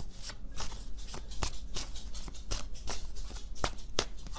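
Tarot deck being shuffled by hand: a stream of irregular soft card clicks and flicks.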